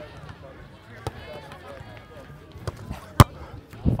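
Background voices on an outdoor court, with one loud, sharp smack of a hand striking a volleyball about three seconds in.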